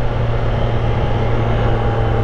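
Triumph Street Triple 765 RS inline-three engine running at a steady pitch in second gear while the bike is leaned over in a corner, with wind rush over the helmet-mounted camera.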